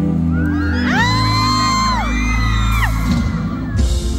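Live concert music with a steady heavy bass, and high-pitched screams from the audience rising over it, held and then falling away, for a couple of seconds.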